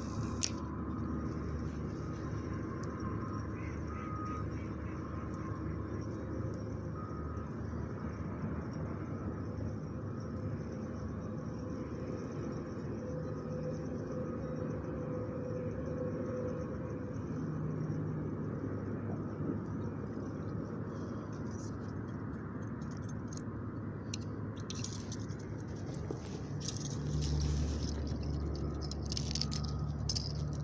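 Steady outdoor background noise with faint scattered calls, then clicks and handling noise in the last few seconds.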